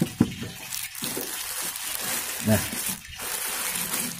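Plastic packaging crinkling and rustling as hands tear open a plastic courier mailer and the thin black plastic bag inside, with a sharp crackle just after the start.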